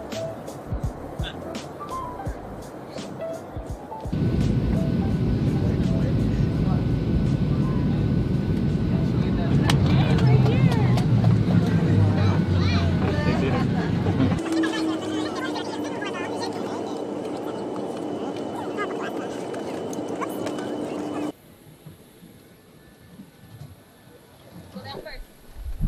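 Jet airliner cabin noise in cut-together stretches: a loud low rumble from about four seconds in, then a steadier hum with a held tone from about fourteen seconds in, cutting off suddenly near the end.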